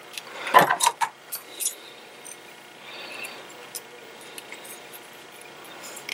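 A few light clicks and handling noises as hands work fishing line and a pair of line-cutting scissors to trim the knot's tag ends, mostly in the first two seconds, then a faint hiss with small ticks.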